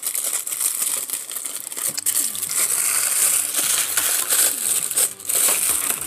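Thin plastic bag and cardboard packaging crinkling and rustling as an action figure is pulled out of its box, a continuous crinkle of many small crackles.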